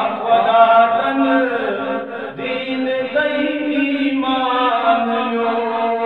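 A man's unaccompanied voice singing a Kashmiri naat, a devotional poem in praise of the Prophet, in long drawn-out notes that waver and bend in pitch, with a brief break for breath about two and a half seconds in.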